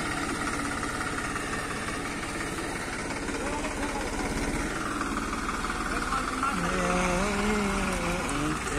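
Farm tractor's diesel engine running steadily, its note changing about halfway through. Voices come in near the end.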